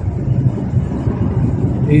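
Steady road and engine noise inside a moving car's cabin: an even low rumble with a softer hiss above it.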